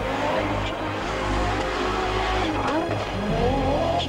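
Audi Sport Quattro S1 rally car's turbocharged five-cylinder engine revving hard, its pitch climbing and dropping several times, over a steady background music track.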